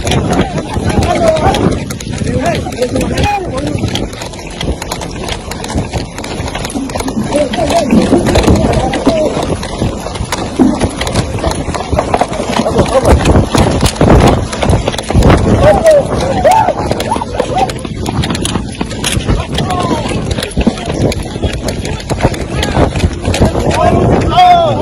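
Footsteps of a group walking on hard dirt ground, recorded close on a handheld phone, with indistinct talking among them.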